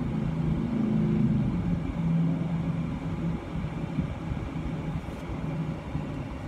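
A car engine idling, a steady low hum.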